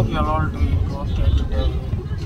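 Steady low rumble of a car's engine and road noise heard from inside the cabin, from the back seat.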